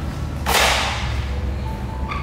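A single short whoosh about half a second in, sharp at the start and fading over about half a second, over quiet background music.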